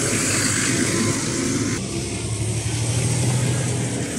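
Heavy articulated truck's diesel engine running as the tractor unit and tipper trailer drive by, with an abrupt change about two seconds in to a steadier, deeper engine drone.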